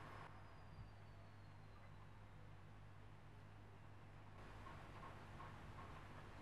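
Near silence with a faint steady low hum from a clothes dryer running in the background.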